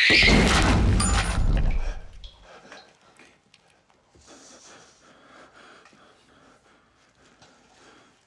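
A single loud gunshot right at the start, cutting off a scream that rises in pitch just before it; the boom dies away over about two seconds, leaving only faint movement and rustling.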